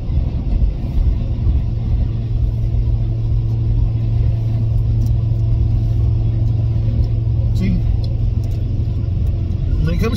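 Steady low drone of a car's engine and road noise heard inside the cabin while driving.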